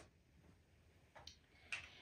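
Near silence: room tone with a faint click at the start and a couple of soft, brief handling sounds later on, as small skincare products are picked up.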